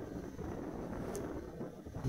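Motorcycle engine running at low speed, with wind on the microphone.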